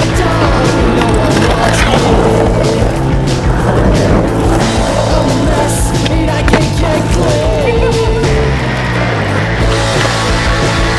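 Skateboard wheels rolling on concrete with sharp board clacks and pops, mixed with a background music track.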